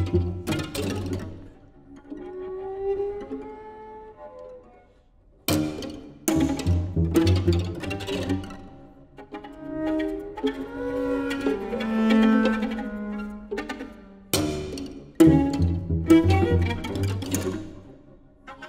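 String quartet of two violins, viola and cello playing a contemporary piece: loud, abrupt accented chords with a heavy low cello register at the start, about five and a half seconds in and about fourteen seconds in, separated by quieter held and sliding notes.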